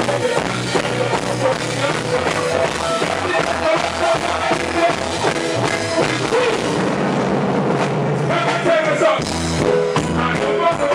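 Live reggae music played loud through a stage sound system: a band with a steady bass-and-drum beat, and a man singing over it.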